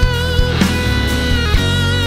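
Live pop band playing an instrumental break: a held lead melody with vibrato and slides over bass and regular drum hits.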